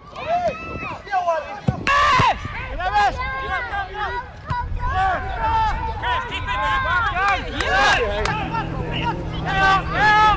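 Footballers and spectators calling and shouting across an outdoor pitch during play, with a few short sharp knocks. A steady low hum comes in near the end.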